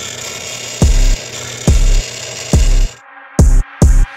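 Electronic music with a heavy, deep bass kick about once a second, laid over the steady whir of a bench drill press boring into a copper block. The drilling noise stops about three seconds in, while the bass hits carry on and come faster.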